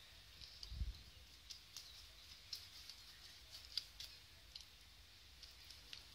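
Faint, scattered soft clicks of a silicone pastry brush dabbing beaten egg onto a raw pastry lid, with one soft low thump about a second in.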